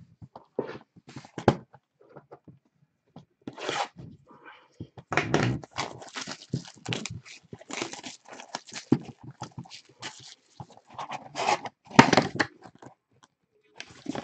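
Shrink-wrapped cardboard trading-card box being cut open and unwrapped by hand: a run of crinkling, tearing and scraping of plastic and cardboard, sparse at first and busiest through the middle.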